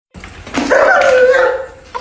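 A German Shepherd gives one long, drawn-out vocal call about a second long, its pitch sliding down a little before it fades.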